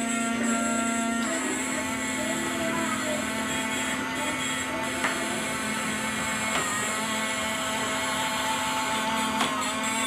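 Battery-operated bump-and-go toy excavator running by itself: its small electric motor and gears hum steadily under a tinny electronic tune from its built-in speaker, the tune changing about a second in.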